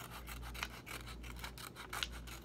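Scissors snipping through lined notebook paper, cutting around a glued-on shape in a quick run of short snips.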